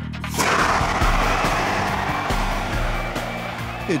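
CO2 fire extinguisher discharging through its horn as thrust for a rider on a skateboard: a loud, continuous rushing hiss that starts about a third of a second in and eases slightly toward the end.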